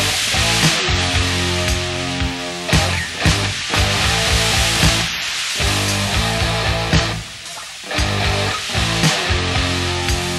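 Rock band playing an instrumental passage with no singing: sustained guitar chords over bass and drums, with repeated drum hits and cymbal wash. The band drops away briefly about three-quarters of the way through, then comes back in at full volume.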